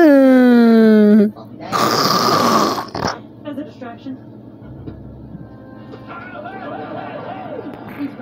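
A person's loud drawn-out vocal sound, sliding down in pitch over about a second, then a harsh breathy burst lasting about a second. After that, faint cartoon voices and music from a phone speaker.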